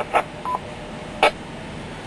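Amateur two-way radio between transmissions: a click as one transmission drops, a short beep about half a second in, then a sharp click just past a second in, over a steady hiss.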